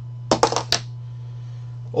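A plastic die rolled onto a tabletop: a quick run of four or five sharp clicks over about half a second, a little under a second in.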